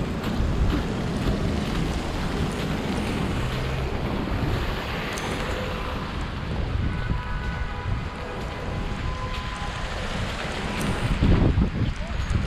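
Wind buffeting a small action-camera microphone over the steady rumble of city street traffic, with a faint steady tone for a few seconds past the middle and a louder gust near the end.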